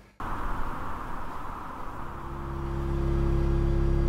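Film soundtrack ambience: a soft hiss gives way, about halfway through, to a deep rumbling drone with a steady hum above it that swells gradually louder.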